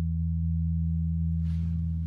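Electric bass guitar holding one low note through its amplifier, ringing out steadily with no new attacks as the song's final note sustains.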